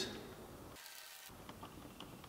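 Faint scraping and a few light clicks of a stick stirring casting resin in a plastic cup.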